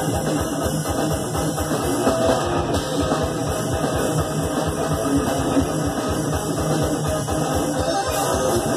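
Thrash metal band playing live: distorted electric guitar over fast, steady drumming on a drum kit, played loud through a PA.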